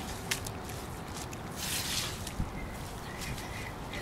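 Wet soil and grass being scraped and pressed back by hand around a buried lawn sprinkler head: soft rustling with a few light clicks.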